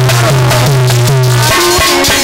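Live Hindi folk song: a man's voice singing into a microphone over drums. A steady low held note plays beneath and stops about one and a half seconds in.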